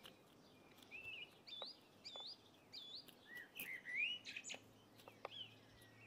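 A songbird singing faintly: a phrase of quick, curving whistled notes that starts about a second in and runs for about four seconds, with a few short clicks among them.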